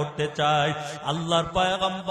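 A man's voice chanting a sermon in a melodic, sing-song recitation, with long held and gliding notes.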